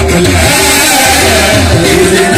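Live qawwali music at full volume: a harmonium melody over a steady hand-drum beat.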